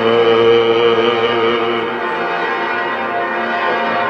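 Byzantine chant: male voices holding long, steady notes with a slight waver. The held pitch shifts once, about two seconds in.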